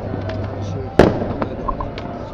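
A single sharp firework bang about a second in, with a short echoing tail.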